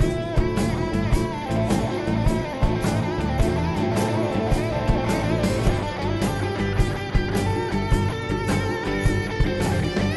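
Live band music: an electric guitar solo over a steady drum beat.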